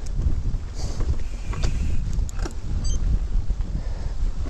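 Mountain bike rolling along a dirt singletrack: a steady low rumble of wind and tyre noise on the camera microphone, with scattered light clicks and ticks from the tyres and bike.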